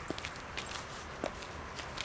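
Footsteps of someone walking outdoors: a few short, irregular steps over a steady low background rumble.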